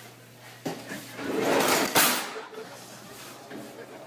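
A child handling drawers: a knock, a rustling scrape, then a sharp clack about halfway through.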